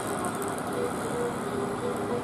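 Road traffic noise from motorcycles and an approaching tour bus running slowly, a steady mix of engine sound, with faint voices in the background.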